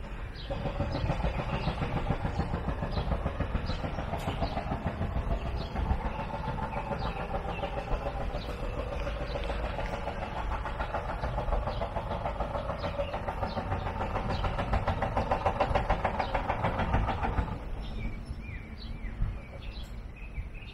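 A passing vehicle running steadily, growing louder and then stopping abruptly about 17 seconds in.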